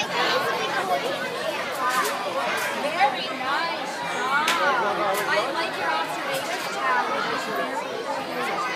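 Several children and adults talking over one another, a busy chatter of voices with no single clear speaker, and a brief sharp click about three seconds in.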